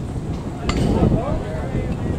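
Wind rumbling on the microphone, with distant voices and a single sharp click a little under a second in.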